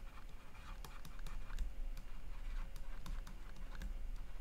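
Stylus tapping and scratching on a tablet screen while handwriting, a run of irregular light clicks over a low steady hum.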